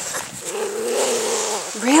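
Schnauzer puppy "talking": one drawn-out vocal sound about a second long, held at a nearly steady pitch with a slight rise and fall.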